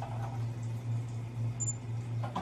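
Room tone in a small office: a steady low hum with a faint short clatter at the very start.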